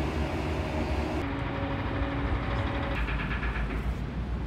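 Steady low mechanical rumble with a few faint steady hums; the high end drops away about a second in, and the sound changes again about three seconds in.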